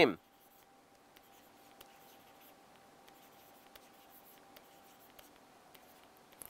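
Stylus writing on a pen tablet: faint scattered taps and light scratches. A faint steady tone runs underneath.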